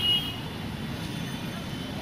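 Low, steady rumble of street traffic.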